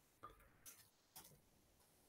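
Near silence: faint room tone with three faint, short clicks about half a second apart in the first part.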